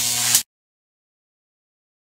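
Glitch-style sound effect for an animated logo: a short hiss over a low hum that cuts off sharply about half a second in, then dead silence.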